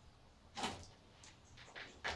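A person stirring and sitting up on a wooden bench: a few faint, brief swishes of movement.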